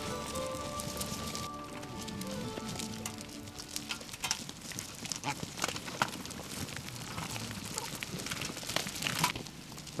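Soft background music with held notes over the first couple of seconds, then the scuffle of a crowd of griffon vultures mobbing a carcass: a dense run of short knocks, clicks and rustles on stony ground.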